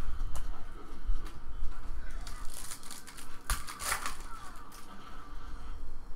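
Trading cards being handled and shuffled by hand, cards sliding against one another, with a few sharp clicks and a louder stretch of handling noise between about two and four seconds in.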